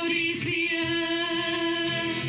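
Live worship band playing a song in Swiss German: women singing one long held note over acoustic guitar, violin and cajón.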